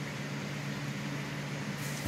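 A steady low background hum made of a few constant low tones, such as a fan, air conditioner or other running appliance in the room would make.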